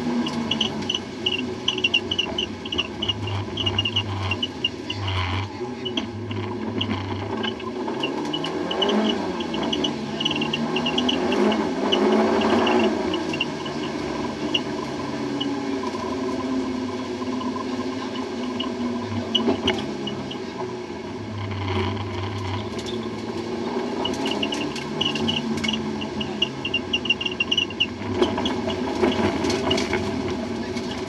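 MG ZR rally car's engine heard from inside the cabin, revving up and falling back again and again as it is driven through the gears. Underneath runs a steady hiss of water spray off the soaked stage.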